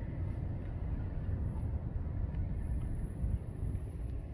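Steady low outdoor rumble with no distinct events, the kind of background left by wind on a phone microphone and distant traffic.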